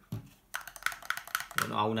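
Screwed-together wooden ant-nest block (a wooden test-tube formicarium) rattling as it is handled, a quick run of small clicks, like castanets. The rattle comes from the hollow inside the piece, not from a loose screw.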